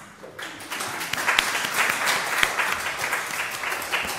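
Audience applauding, many hands clapping at once; it starts about half a second in and swells over the next second.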